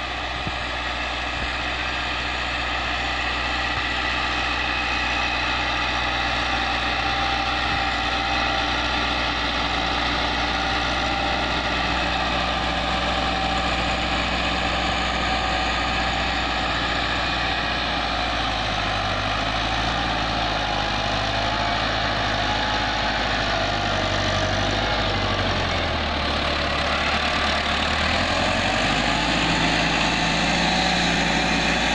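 Massey Ferguson tractor's diesel engine running steadily under load while pulling a spring-tine cultivator through the soil. Its note shifts down and back up a few times in the last third.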